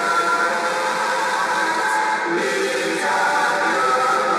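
A church choir of women's voices singing together, amplified through microphones, at a steady loud level.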